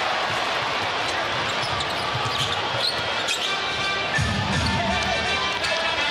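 Arena crowd noise over a basketball being dribbled on a hardwood court, with short sneaker squeaks around the middle.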